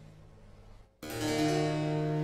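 A held chord fades away to a brief, almost silent pause. About a second in, a harpsichord and cello come in together sharply on a new chord, the cello holding a low, steady note under it.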